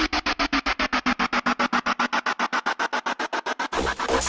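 Electronic music with a fast stuttering pulse, about a dozen hits a second, over a slowly falling tone; near the end it switches to a fuller, heavier beat.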